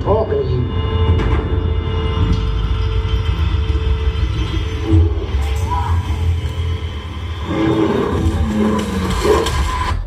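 Movie trailer soundtrack played over cinema speakers: tense music with a deep, steady rumble under a long held tone, and indistinct voices late on.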